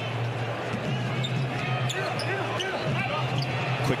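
A basketball being dribbled on a hardwood court, with brief sneaker squeaks, over the steady murmur of an arena crowd.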